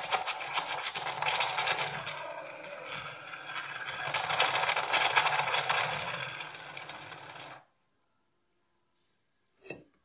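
Espresso machine steam wand frothing milk in a stainless steel jug: a loud steady hiss with a low hum underneath, which cuts off suddenly about three-quarters of the way through. A brief knock comes near the end.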